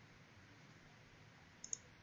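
Near silence: room tone, with two faint, quick clicks close together about one and a half seconds in, a computer mouse button being pressed and released.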